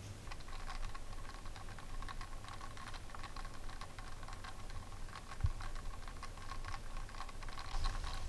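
Faint, rapid, irregular small clicks and ticks over a faint steady high whine, with one soft knock about five and a half seconds in.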